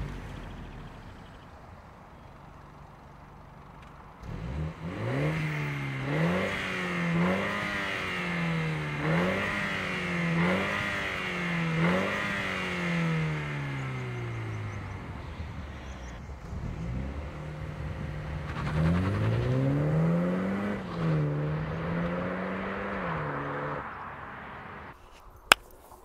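2022 Mini John Cooper Works' 2.0-litre turbocharged four-cylinder engine and exhaust under hard acceleration, its pitch climbing and dropping back about six times in quick succession before winding down. A second, shorter run of about three climbs follows, then a single sharp click near the end.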